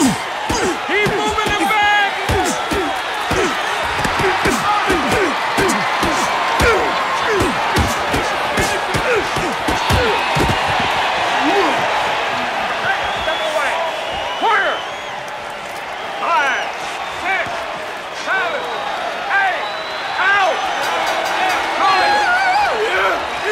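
Rapid punch thuds land in quick flurries, densest over the first half and sparser later, over a boxing crowd. The crowd's many voices shout throughout, with rising whoops and yells in the second half.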